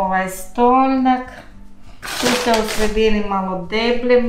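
A woman's voice in long, held tones, like singing or humming, with a short hiss about two seconds in.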